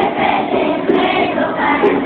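A school children's choir singing a Venezuelan Christmas song together in unison, loud and steady.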